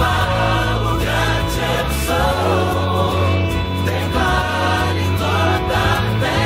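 Contemporary Christian worship song sung in Portuguese, a lead voice with choir-like backing voices over held bass notes, in a version with the drum kit taken out.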